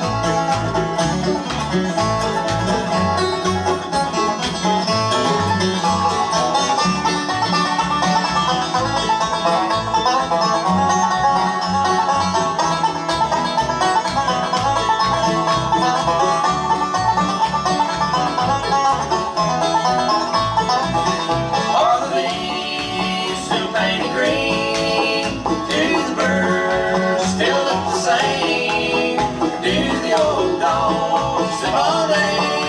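Live bluegrass band playing a tune on banjo, mandolin, acoustic guitar and upright bass, the bass keeping a steady beat underneath.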